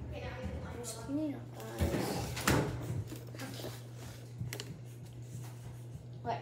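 Indistinct children's voices with handling noises at the counter, and a sharp knock about two and a half seconds in, over a steady low hum.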